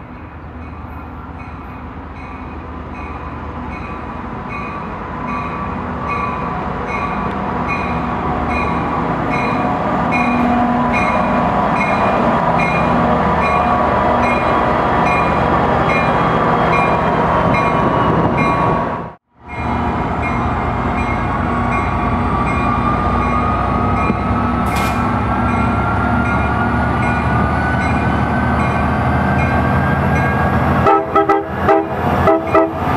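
Tri-Rail EMD GP49 diesel-electric locomotive running as it rolls into the station. It grows louder over the first ten seconds while its bell rings in a steady rhythm of about two strokes a second. After a sudden break the engine runs on with a whine that slowly rises in pitch.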